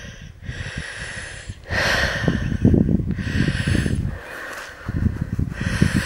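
Heavy breathing close to the microphone: two long breaths with a short pause between, from a walker climbing a steady incline.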